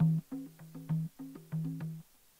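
Madal, the Nepali double-headed hand drum, played by hand in a quick rhythm. It alternates a deeper ringing tone with a higher one, with sharp slaps in between.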